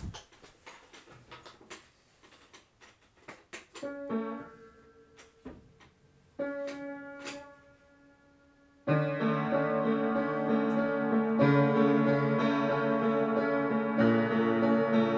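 A scatter of small clicks and knocks, then piano: a few notes about four seconds in, a held chord around six seconds, and from about nine seconds steady, louder chordal playing.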